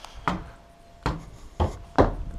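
Footsteps on wooden porch steps: a few dull knocks at walking pace.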